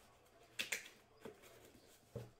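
Two quiet handling clicks: a sharp one about half a second in and a fainter one about a second later.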